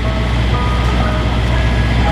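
Ice cream truck's engine running at idle, a loud steady low drone, with a few faint thin tones over it.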